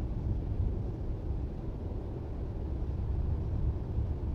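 A steady, low rumbling noise with no distinct events, easing off slightly toward the end.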